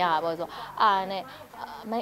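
A woman's voice speaking animatedly, with long, drawn-out syllables at the start and about a second in.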